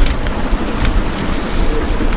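Steady low rumble with an even hiss over it, like wind noise on an open microphone, with no speech.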